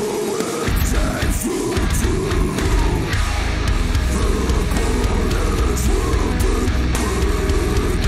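Progressive metalcore track playing loud, with dense heavy guitars and drums. The low end cuts out briefly at the start and comes back in under two seconds in.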